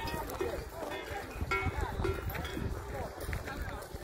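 Faint voices and music in the background, over a low steady rumble; no clear hoofbeats or horse calls stand out.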